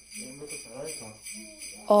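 Background music with steady jingling sleigh bells.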